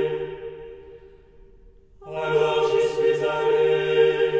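A choir singing a French liturgical chant. A phrase dies away in the first half, there is a short pause, and the choir comes back in on the next phrase about halfway through.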